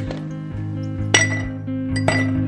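Ice cubes dropped into a ribbed glass tumbler, each landing with a sharp clink that rings briefly: the loudest about a second in and another near the end. Background music plays throughout.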